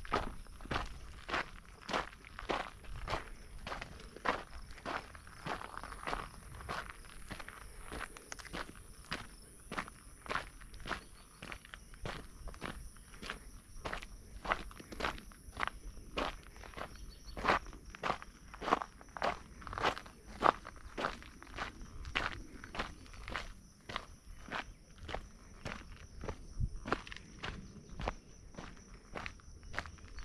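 Footsteps of a hiker walking on a rocky trail of loose sandstone and grit, at a steady pace of about two steps a second.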